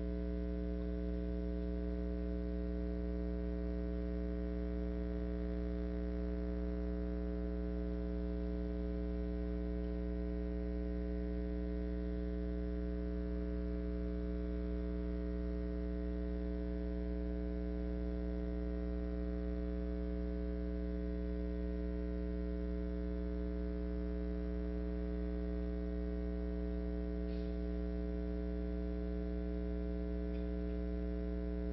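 Steady electrical mains hum in the recording: a constant low buzz with many evenly spaced overtones, unchanging throughout.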